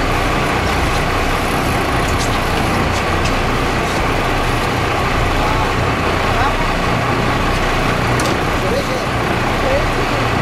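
Boat engine running steadily, a constant low drone under a rush of wind and water.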